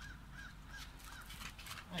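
An animal calling faintly: a run of short, high, arching calls, about three a second.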